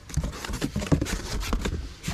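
Hands going through plastic mailer bags packed in a cardboard box: irregular rustling and crinkling with light taps of cardboard.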